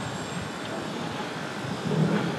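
Steady background noise, even and unbroken, with no distinct event in it.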